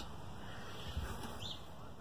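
Quiet outdoor background noise with one short, high bird chirp about one and a half seconds in.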